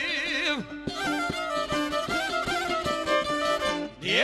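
Bosnian izvorna folk band: a sung phrase ends within the first second, then violin and strummed šargija play a short instrumental break until the singing resumes at the very end.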